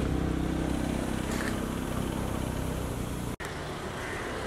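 A car's engine running close by, a steady low hum, which cuts off abruptly a little over three seconds in and gives way to quieter outdoor background noise.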